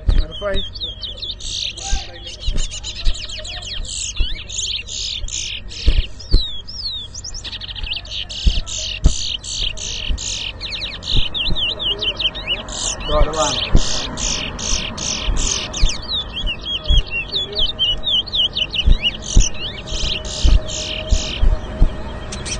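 Caged towa-towas (chestnut-bellied seed finches) singing without pause: a fast run of high whistled notes and quick rising and falling glides.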